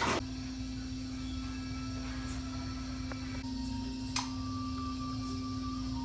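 A steady low hum, with a brief click about four seconds in.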